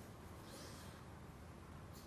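Near silence: faint steady background hiss in a pause between spoken phrases.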